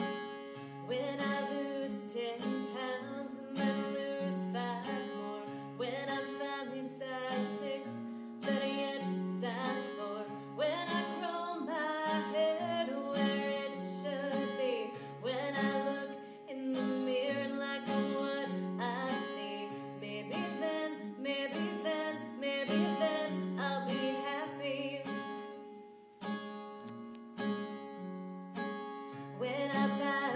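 A woman singing a song to her own acoustic guitar accompaniment. The voice drops out briefly a few seconds before the end while the guitar carries on.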